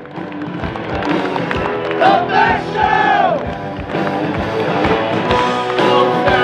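A live rock band playing on stage with a steady drum beat of about two hits a second and sustained guitar tones, a voice singing or calling out over it between about two and three and a half seconds in, and crowd noise underneath.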